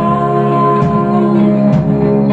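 A live band playing: two electric guitars holding chords over a drum kit, with drum strikes a little under a second apart, and a woman singing.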